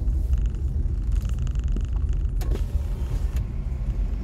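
Low, steady rumble of a car driving slowly, heard from inside the cabin, with a faint buzzing rattle in the first half and two light clicks later on.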